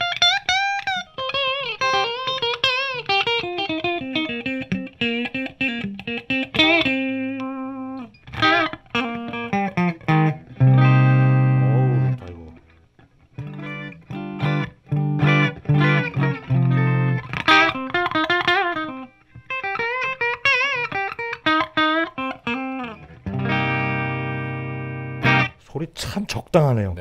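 PRS SE Santana Abraxas electric guitar played through a Marshall JCM2000 amplifier on its clean channel: melodic single-note lines with bends and vibrato, broken by loud sustained chords about ten seconds in and again near the end.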